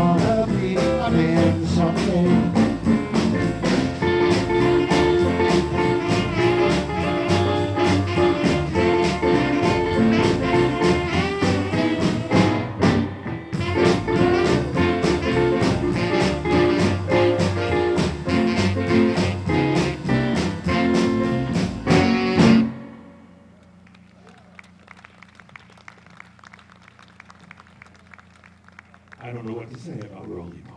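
Live blues band playing: electric guitar, upright bass, saxophone, drums and keyboard with a man singing. The song ends abruptly on a final hit about 23 seconds in, leaving only a low steady hum.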